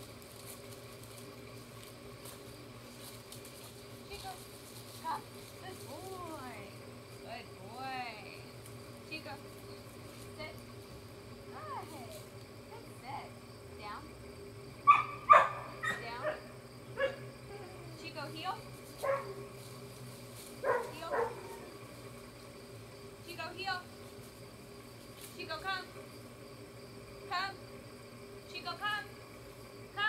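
A woman's voice giving short, scattered commands to a dog, with quiet outdoor background between them; the loudest come about halfway through.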